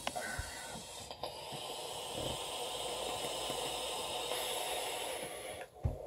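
A long, steady draw on a vape through a dripping atomizer: air hissing through the atomizer's airflow for about five and a half seconds, with a faint brief whistle at the start and a short low puff near the end as the hit ends.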